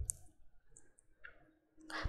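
A few faint, brief clicks, two of them close together at the start, in an otherwise quiet pause.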